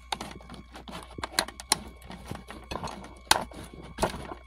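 Metal mounting bracket being pressed down over a screen-and-keypad module in a plastic pump-drive cover: a run of light clicks and taps, with one sharper, louder click near the end as it snaps into place.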